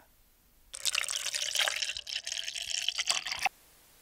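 Liquid pouring and splashing into a bowl for about three seconds, starting shortly after the word "pour" and cutting off suddenly.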